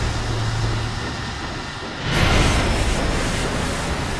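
Steam locomotive at a station: a steady rush of steam hiss over a low rumble, swelling into a louder burst of steam about two seconds in.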